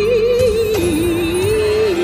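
A singer holding one long sung note with a wavering vibrato over a karaoke backing track.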